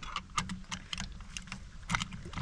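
Short plastic-and-metal clicks and rattles of a Master Lock portable key safe being handled as its adjustable shank is released and fitted around a car's tow bar, with a sharper click near the end.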